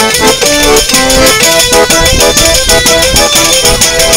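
Live traditional folk music: a melody of short held notes over a fast, steady percussion beat.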